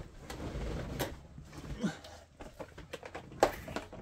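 Rustling and handling noise as someone reaches down the sides of a leather recliner to retrieve dice, with a few light knocks and a brief voice sound near the middle.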